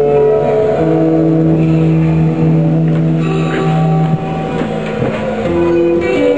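Acoustic guitar played solo and without singing, with notes and chords left ringing for a second or more each over a held low note.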